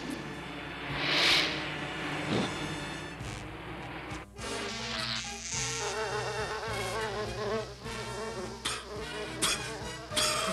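Cartoon sound effect of a fly buzzing, its pitch wavering up and down, with a short hiss about a second in.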